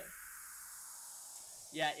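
A DJ sampler's white-noise downsweep effect: a steady hiss whose pitch sinks slowly, used as a filler between parts of a mix.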